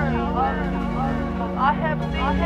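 A voice vocalising in gliding, wavering pitches over music with steady held low notes underneath.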